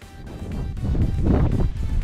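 Wind buffeting an action camera's microphone: a gusting low rumble that rises over the first second and stays loud.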